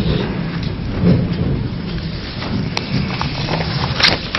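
A hall full of people sitting down: a steady low rumble of shuffling and chair noise.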